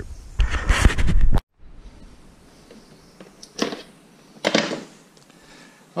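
Close rustling and handling noise, cut off abruptly after about a second and a half. Then quiet room tone with two soft knocks, about a second apart, near the middle.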